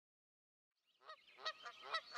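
After silence, a quick series of short pitched animal calls begins about a second in, several to the second.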